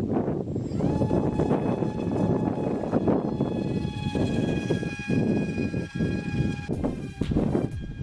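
Wind buffeting the microphone, with the faint steady whine of a home-built RC glider's electric motor and propeller. The whine rises in pitch about a second in as the motor spins up after the hand launch, and cuts out about seven seconds in, leaving gusts of wind noise.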